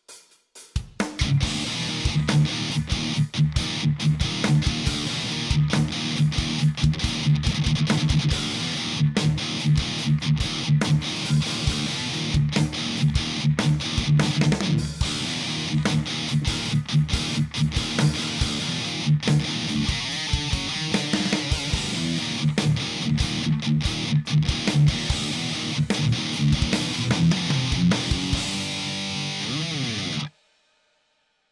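Background music with electric guitar and drums, starting about a second in, with a steady beat throughout.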